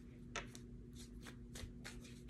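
Tarot deck shuffled by hand: faint soft slides and taps of the cards, one a little louder about a third of a second in.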